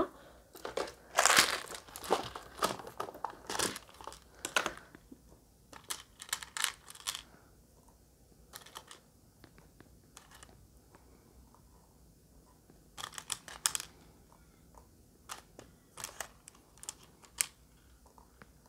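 Small plastic safety eyes being picked out of a clear plastic storage box: irregular rustling, clicking and rattling. It is busiest for the first several seconds, then comes in scattered short bursts.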